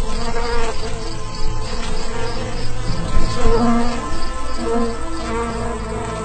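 Wings of a swarm of flying ladybugs buzzing, a continuous drone that is loudest in the middle and eases toward the end.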